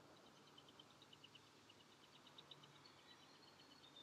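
Near silence: quiet outdoor ambience with a faint, rapid run of high-pitched chirps, several a second, from a small bird or insect in the distance.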